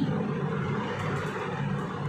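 Steady background noise: an even hiss with a low hum beneath it.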